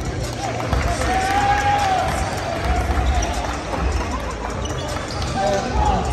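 Basketballs bouncing on a hardwood gym floor during warm-up drills, giving repeated, irregular thuds, with voices around the gym.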